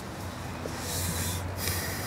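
A soft breath out through the nose, about a second in, picked up close by a clip-on microphone over a low, steady room hum.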